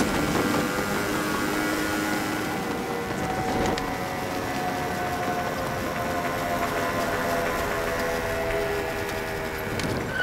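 Scooter engine running steadily at cruising speed, about 50 km/h, with wind and road noise. It is an even, unchanging hum with no revving.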